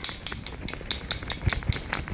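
Rare Beauty foundation bottle being shaken hard by hand, a quick, even rattle of small clicks about seven a second.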